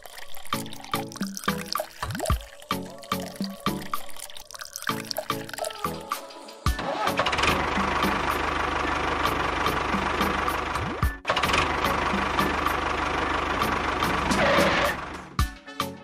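Background music with a beat, joined about seven seconds in by the steady running sound of the mini tractor's small motor. The motor sound drops out for a moment near the middle and stops shortly before the end.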